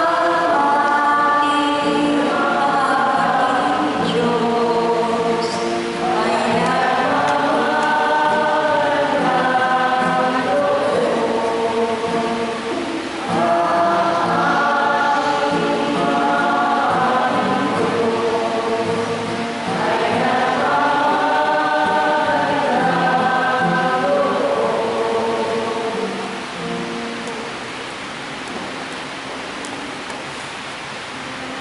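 Amplified singing of a liturgical chant, led by a woman at a microphone, in four long phrases of about six seconds each with held notes. About 26 seconds in the singing ends and a steady hiss is left.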